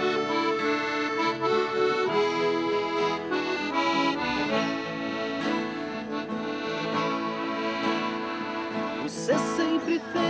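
Piano accordion playing the melody and held chords of a slow sertanejo song's instrumental introduction, with acoustic guitar accompaniment beneath.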